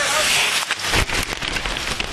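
Ice hockey play at rink level: skate blades scraping the ice and many quick clacks of sticks and puck over arena crowd noise, with a low thump about a second in.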